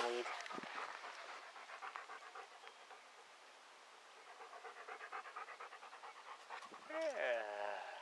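A dog panting in quick, even breaths. The panting eases off about three seconds in and picks up again, and a short voiced sound comes near the end.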